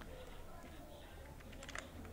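Faint clicking of a computer keyboard being typed on, with a quick cluster of keystrokes near the end.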